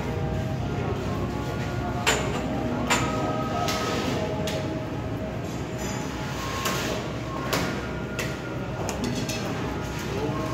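Indoor wet-market hubbub with distant voices, overlaid by a run of sharp knocks about once a second from about two seconds in until near the end.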